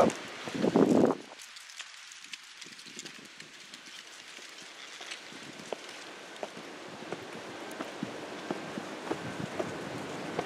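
A brief rush of noise about a second in, then faint steady hiss with scattered soft ticks: handling noise and footsteps from someone walking with a handheld camera.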